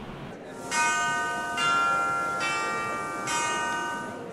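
Closing sound logo of four bell-like chime notes, struck a little under a second apart, each ringing on into the next and dying away at the end.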